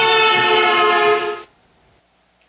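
Recorded horn of a passing car, a loud steady multi-tone blare whose pitch slides lower as the car moves away: the Doppler shift. It cuts off about one and a half seconds in.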